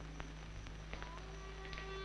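Faint film background score coming in with long held notes about a second in, over the steady hum and hiss of an old film soundtrack with a few small clicks.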